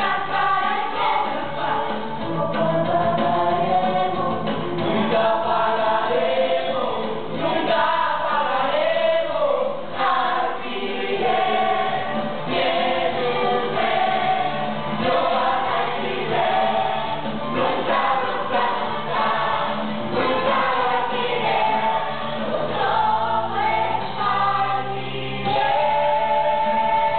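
Stage-musical cast singing together as an ensemble over band accompaniment, many voices at once, continuous and loud.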